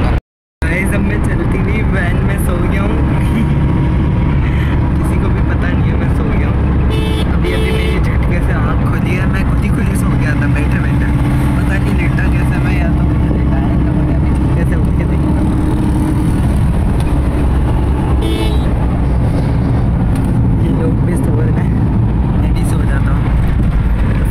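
Loud, steady engine and road rumble inside a moving vehicle's cabin, which is very noisy, with a couple of short horn toots about seven seconds in and again near eighteen seconds.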